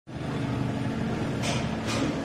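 Diesel engine of a compact wheel loader running steadily at idle, with two short hisses near the end.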